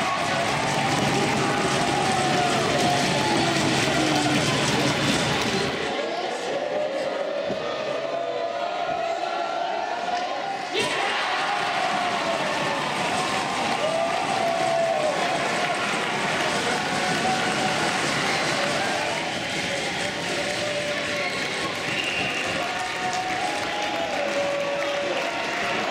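Rink crowd and young players cheering and shouting, with many voices at once including high children's shouts, celebrating the winning goal at the final whistle.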